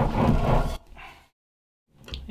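Propeller blade being rocked back and forth on a metal bar to press a new lip seal into its channel, making a rubbing, rolling noise that breaks off abruptly under a second in.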